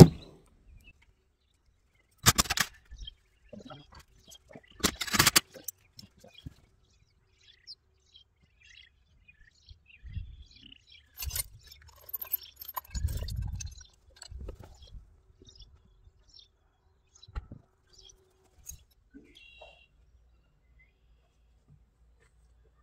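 Hands-on work noise from trailer-tongue wiring and tools: two sharp clatters in the first few seconds, then scattered clicks, a shuffling thump about halfway through and another click later, with birds chirping now and then.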